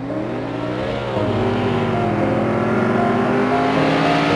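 Car engine revving, its pitch climbing, dipping about a second in, then rising steadily again, over a rush of engine noise.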